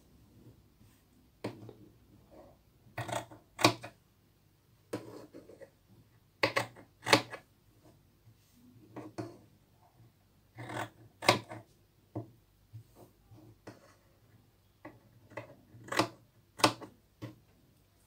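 Scissors snipping through tulle in short, sharp cuts, singly or in quick pairs, with pauses between them as notches are cut into the fabric's corners, along with the light handling of the fabric on a wooden tabletop.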